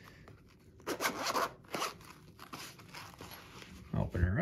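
Zipper on a sturdy zippered carrying case being pulled open. One longer rasping zip comes about a second in, then a couple of shorter pulls.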